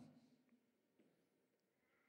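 Near silence: room tone, with the last spoken word fading out at the start and a couple of faint ticks.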